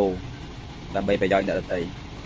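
A man speaking Khmer in two short phrases, over a faint steady low background hum.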